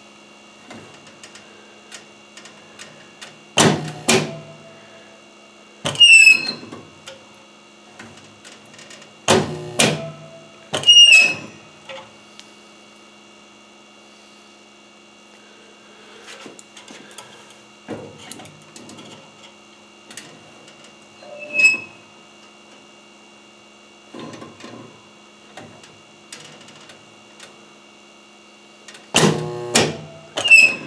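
Rocker-arm resistance spot welder welding steel wire: about half a dozen short, loud bursts spread through, several with a brief high squeak, over a steady electrical hum.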